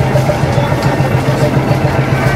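An engine idling, a steady low pulsing throb.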